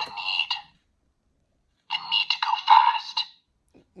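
Spin Master Speed Force Flash electronic talking figure playing recorded voice lines through its small built-in speaker, thin and tinny. There are two bursts: one as the chest button is pressed, ending within the first second, and another starting about two seconds in and lasting about a second and a half.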